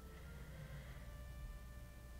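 Quiet room tone: a low steady hum with a few faint, thin sustained tones above it.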